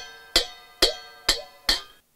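A pair of small brass jhyamta hand cymbals struck together in an even rhythm, four clashes about two a second, each ringing briefly.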